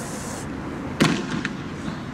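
A single sharp, loud bang about a second in, followed by a few fainter cracks in the next half second, over steady outdoor background noise.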